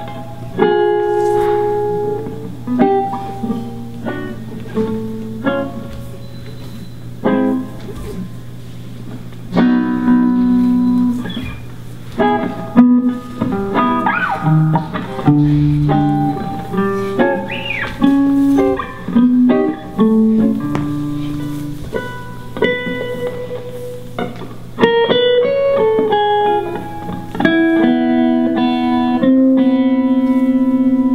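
Guitar played live in a free, improvised way: single plucked notes and short chords with pauses between them, a few notes bending upward in pitch about halfway through, and denser, longer-held notes near the end. A steady low hum runs underneath.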